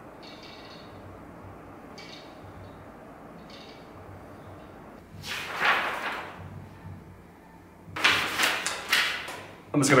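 Quiet room tone with a few faint clicks of plastic parts being handled as a circular-saw straight-edge guide is put together, then a louder rustle about five seconds in.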